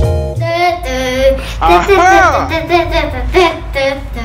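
A young child singing without words, in a wavering voice with a big swoop up and down in pitch about two seconds in. Backing music cuts off just as the singing begins.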